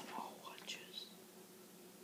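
Soft whispered speech for about the first second, then quiet room tone with a faint steady hum.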